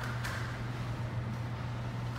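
Steady low hum of room background noise, with a faint brief rustle about a quarter second in. There is no clear impact or whoosh.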